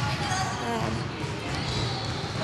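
Sports hall background: repeated dull low thuds on the floor with faint voices of people practising.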